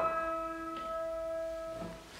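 Carlmann baby grand piano's closing chord sustaining and dying away, its notes damped and cut off near the end.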